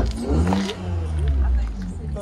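People's voices talking, over a steady low rumble.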